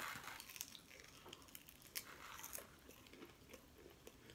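A person chewing a mouthful of fried food, faint, with a soft crunch at the start and a few small crunches and clicks after.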